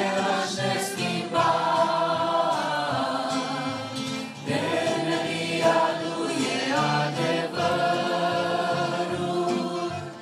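Church worship group of women's and men's voices singing a Christian song together in harmony, holding long sustained notes.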